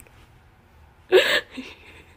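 After a quiet moment, one short, breathy burst of stifled laughter about a second in.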